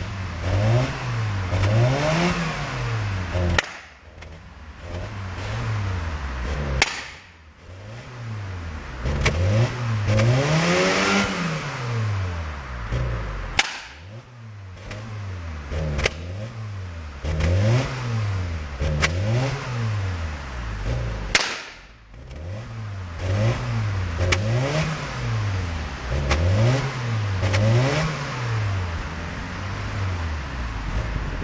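Suzuki SJ413's 1.3-litre four-cylinder engine revved in quick blips over and over, its note climbing and dropping, heard at the tailpipe. A few sharp cracks come from the exhaust, four of them spread across the clip. The owner thinks the engine is running a bit rich.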